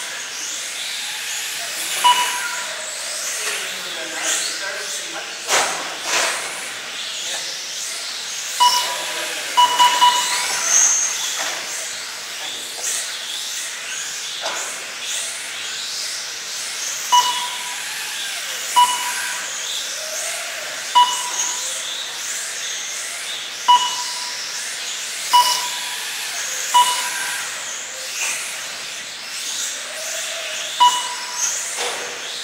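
Short electronic beeps, about ten at irregular intervals, from the race's lap-counting system as 1/18-scale RC cars cross the timing line. Underneath runs a steady hiss with faint rising and falling whines from the small brushless-motor cars on the carpet track.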